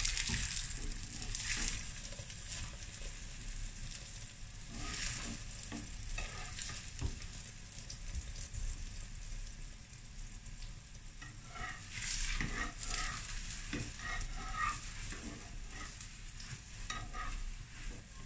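Paratha frying in oil on a cast-iron griddle (tawa), sizzling steadily. Metal utensils scrape and click against the pan in short busy spells at the start, about five seconds in, and again a little past the middle as the bread is turned and pressed.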